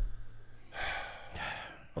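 A man sighing into a close microphone: one breathy exhale, starting just under a second in and lasting about a second.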